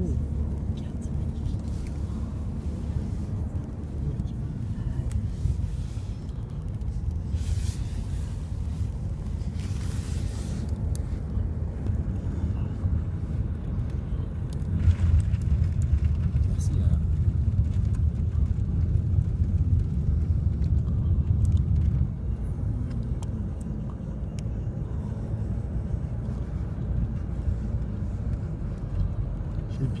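Low engine and tyre rumble heard inside a moving car's cabin, getting louder for several seconds midway.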